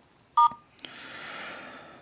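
Samsung Intrepid phone giving a short two-tone dialing beep about a third of a second in, as TellMe places a call to the chosen number, followed by a soft hiss that fades over about a second.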